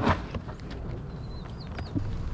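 Outdoor background rumble with a few light clicks from handling trading cards and a plastic binder, and a faint high chirp near the end.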